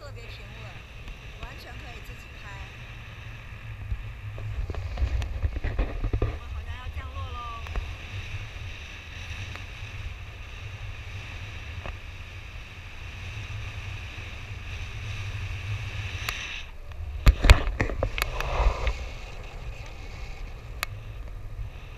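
Wind rushing over the microphone of a camera carried on a paraglider in flight: a steady low buffeting that swells in gusts about four to six seconds in and again near the end.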